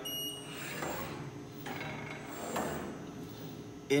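Automatic carousel screen printing press indexing: the motor-driven carousel turns the pallets on to the next station, a smooth mechanical whir that swells twice.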